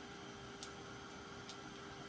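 Handheld heat gun running with a faint steady hum while drying chalk paste. Two faint ticks come about half a second and a second and a half in.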